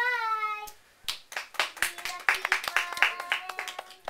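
A short high child's voice with a falling pitch, then a small group clapping: a few claps about a second in, quickly filling out into about three seconds of applause.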